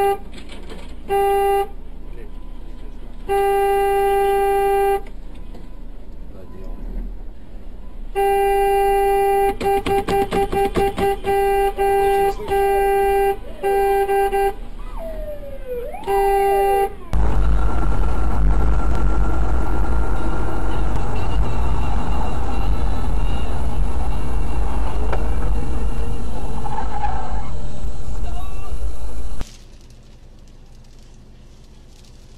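Car horn honking: several long blasts, then a rapid string of short toots and a final blast. It is followed by loud, steady rumbling noise that stops shortly before the end.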